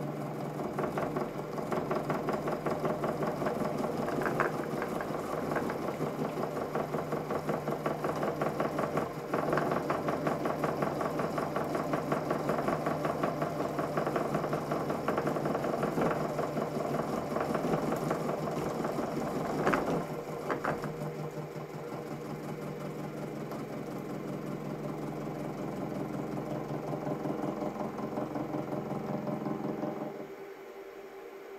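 Sieg SX3.5 milling machine with a face end mill cutting a metal block: a steady motor hum under the rapid chatter of the cutter's teeth. It is louder for about the first twenty seconds, with a few sharper clicks, then eases to a lighter cut.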